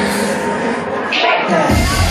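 Electronic dance music played loud by a DJ over a hall sound system; the heavy bass drops out at the start and comes back in near the end.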